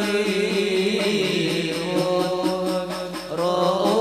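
A group of men chanting an Islamic qasidah in unison, holding long drawn-out notes. A new phrase starts near the end.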